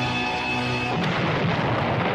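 Cartoon soundtrack: a held electric guitar chord, giving way about a second in to a noisy, rumbling explosion sound effect.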